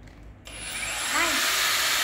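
Cordless angle grinder switched on about half a second in: the motor spins up over about half a second to a steady, loud whirring with a thin high whine, running freely with no load.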